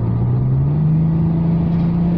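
Rover 45's 2.5-litre KV6 V6 engine pulling under acceleration, heard from the cabin through an open window. Its note rises over about the first second, then holds steady. This is the sound of its variable intake system working.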